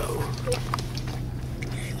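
Steady low hum of the car's engine running, heard inside the cabin, with a few faint clicks. A voice begins to speak at the very end.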